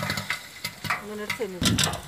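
Food being stirred in a pan while it fries: a run of irregular sharp clicks and scrapes over a sizzling hiss. Near the end a louder low rumble comes in.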